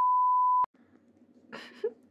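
An edited-in bleep: one steady pure tone around 1 kHz lasting about two-thirds of a second, switching on and off abruptly, cutting in right after speech.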